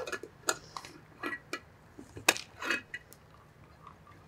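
A scattering of light clicks and taps from lidded drinking glasses and straws being handled on a table, the loudest a little past halfway.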